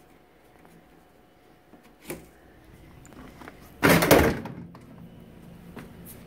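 Something knocked by accident against the terrarium setup: a small click about two seconds in, then one loud thump about four seconds in, over quiet room noise.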